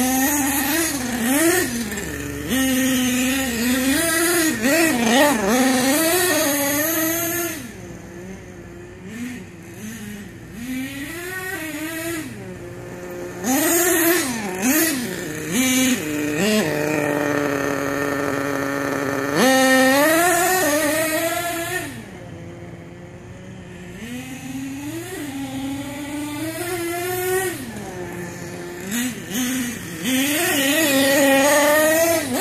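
HPI Savage 25 nitro RC monster truck's small two-stroke glow engine revving up and down in quick repeated bursts as it is driven, the pitch rising and falling. Past the middle it holds one steady high pitch for a couple of seconds, and in between there are quieter stretches.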